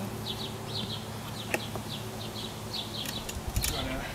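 A small bird chirping in a quick series of short high calls, about three a second. A single sharp click comes about a second and a half in, and a few low knocks near the end.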